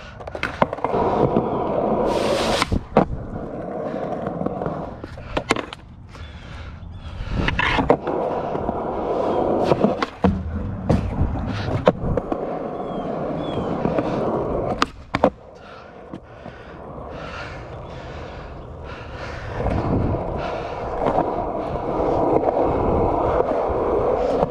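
Skateboard wheels rolling over concrete with a steady rumble, broken every few seconds by sharp clacks of the board's tail and wheels striking the ground.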